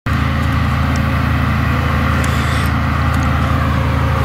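Claas Jaguar forage harvester at work picking up and chopping a swath, with a tractor and trailer running alongside it: a steady, low engine drone.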